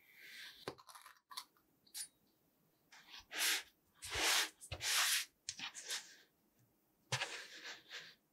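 Kitchen knife slicing down through a block of kinetic sand with a soft grainy crunch at the start. Then come a few louder rustling scrapes as the cut sand blocks are handled and slid across the table, about three seconds in and again near the end.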